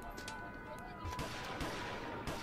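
Gunfire: several sharp shots at irregular intervals, over a steady high tone.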